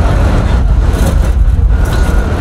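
Loud, steady low rumble of city street noise, with no clear voices or distinct events.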